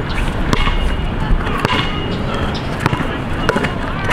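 A basketball bouncing on an outdoor hard court as it is dribbled, heard as sharp, irregularly spaced bangs. Under it is a steady low rumble of wind on the microphone.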